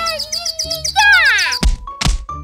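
Cartoon soundtrack: a crying cartoon kitten's wavering wail over chirpy children's music, then a falling whistle-like glide about a second in and a thud near the end.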